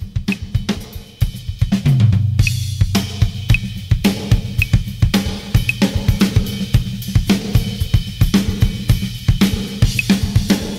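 Solo drum kit playing busy patterns across snare, toms, bass drum and cymbals over a click track that ticks about once a second, on half notes. About two seconds in, a low boom rings on for about a second.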